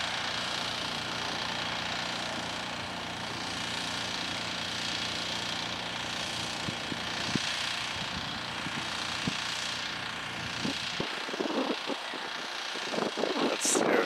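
A vehicle engine running steadily, a low hum under a broad hiss, which cuts off about eleven seconds in.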